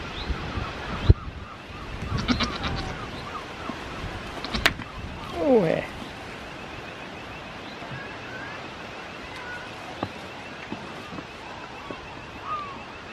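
A goat bleats once, a short call that falls in pitch, about five and a half seconds in. A sharp thump comes about a second in.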